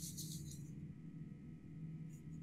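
A pause in conversation: faint steady background hum with a few constant tones and no distinct sound event.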